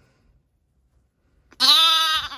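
A young lamb bleating once, a loud wavering bleat that starts about one and a half seconds in, inside a vehicle cab.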